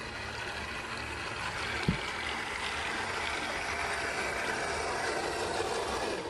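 Model paddle steamer's paddle wheels churning the water, a steady splashing hiss that grows louder as the boat comes close, with a single knock about two seconds in.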